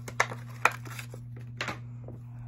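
Foil wrapper of a trading-card booster pack crinkling in the hands, with three sharp crackles, over a steady low hum.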